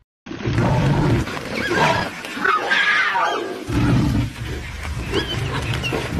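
Big cat roaring and growling loudly in several bouts, starting suddenly just after the start, with higher, wavering cries over it around the middle.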